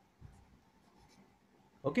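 Pen scratching faintly on paper as a word is written out in a notebook.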